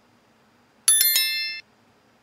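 Notification-bell sound effect of a subscribe-button animation: a bright bell rung with three quick strikes about a second in, ringing for about half a second and cutting off suddenly.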